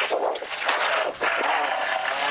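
Toyota Corolla AE86 rally car's engine pulling hard under acceleration, heard inside the cabin together with road and tyre noise, with a brief dip about a second in.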